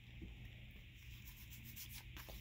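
Faint rubbing and sliding of Pokémon trading cards handled in the hands.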